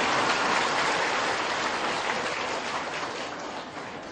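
A large audience applauding, loudest at first and slowly dying away.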